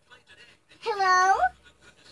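A young child's short, high-pitched vocal call, pitch dipping and then rising, about a second in and lasting under a second.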